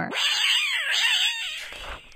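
Angry cat sound effect: a hissing, wavering yowl that fades out near the end.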